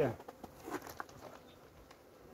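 Handling of a wooden beehive's top cover as it is lifted off, with a soft rustle and a single sharp click about a second in.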